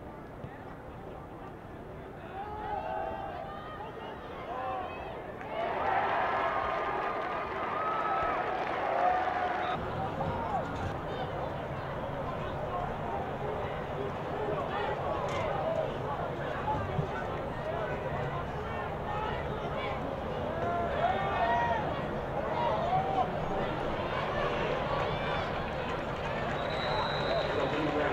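Football game crowd noise: a babble of many overlapping shouting voices from the stands and sideline, louder for a few seconds about six seconds in. A short high whistle tone sounds near the end.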